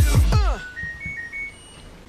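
Background music ends with a few falling pitch sweeps in the first half second. Then an LG Direct Drive top-load washing machine plays its power-on chime: a short tune of about five high electronic beeps at different pitches, lasting about a second.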